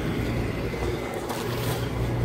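Steady low rumble of idling vehicle engines, with a constant low hum.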